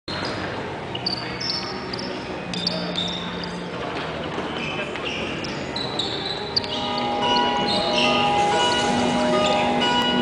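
Sports hall ambience with crowd chatter and short, high squeaks of sports shoes on the wooden court floor. About seven seconds in, music with held, bell-like tones starts and gets louder.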